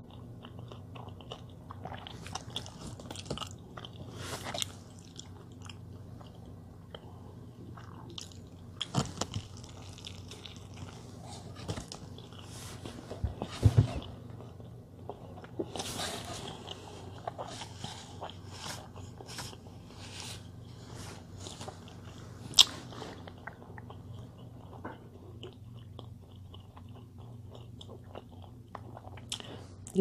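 Chewing and mouth sounds of a person eating a large burger, with scattered sharp clicks and brief rustling of the paper wrapper as it is handled, over a steady low hum.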